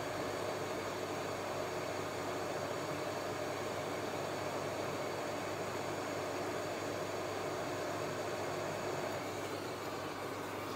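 Steady fan-like hiss with a faint hum underneath, easing slightly just before the end.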